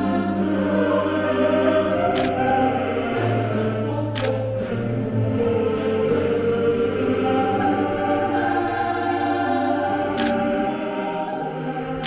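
Background choral music: voices in long held notes over a steady low sustained note, which drops away near the end.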